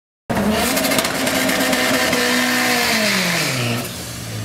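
Honda CR-X del Sol drag car doing a burnout: the engine is held at high revs while the tyres spin and squeal. Near the end the revs fall away as the driver lets off.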